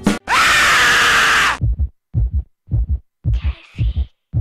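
A loud scream sound effect for about a second and a half, then a heartbeat sound effect: paired low thumps, lub-dub, a little under twice a second.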